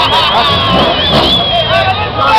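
Car engines idling under a crowd of spectators shouting and talking. A high, wavering, whistle-like tone runs through most of the moment and stops near the end.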